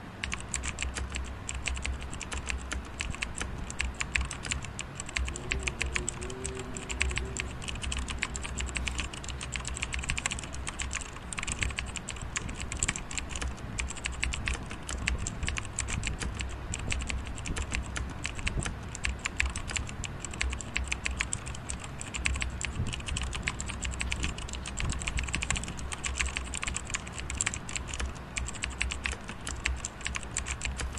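Typing on a computer keyboard: rapid, continuous keystrokes with hardly a pause.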